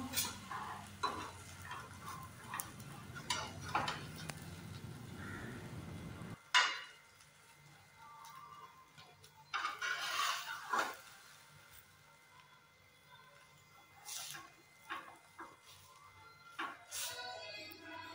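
Metal spatula clinking and scraping against a frying pan as an egg-coated roti is folded and rolled, in scattered clinks with quiet gaps between them. A steady hiss runs under the first six seconds and cuts off suddenly.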